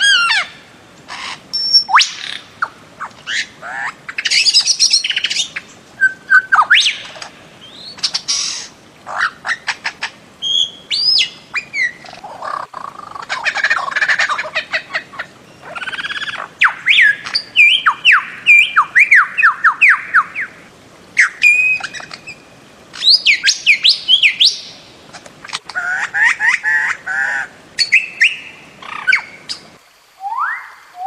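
Birds of paradise calling: runs of loud, harsh squawks and quick downward-sweeping notes, repeated several at a time with short pauses between runs.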